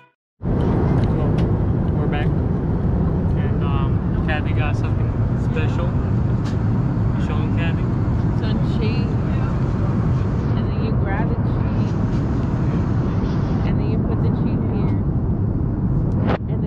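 Jet airliner cabin noise in flight: a steady low rumble of engines and airflow, starting abruptly about half a second in, with indistinct voices of nearby passengers over it.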